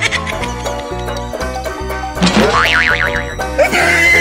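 Upbeat comedy background music with a steady bass line. A little past two seconds in, a wobbly cartoon sound effect rises and then warbles up and down.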